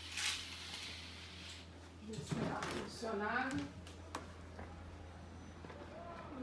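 A short sliding swish right at the start as the balcony door is opened, then a person's voice speaking briefly about two seconds in, over a steady low hum.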